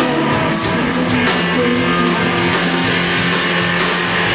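Live indie rock band playing: electric guitars and drums with a keyboard, and a woman singing, heard from the audience.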